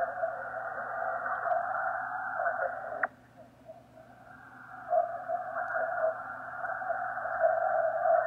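Yaesu FTdx5000MP receiver audio on the 40-metre band, heard through a narrow DSP filter of about 1.1 kHz: muffled, unintelligible single-sideband voices and band noise. About three seconds in, the signal stops with a click and drops to faint hiss, then the noise rises back.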